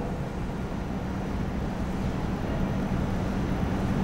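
Steady low background rumble with a faint steady hum.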